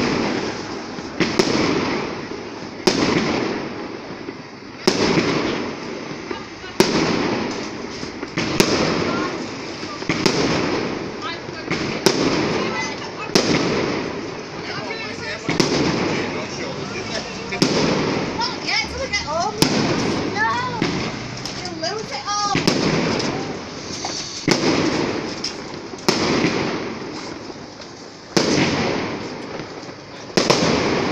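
Fireworks display: aerial shells bursting one after another, a sharp bang about every one and a half to two seconds, each fading in an echo. Gliding whistles rise and fall in the middle.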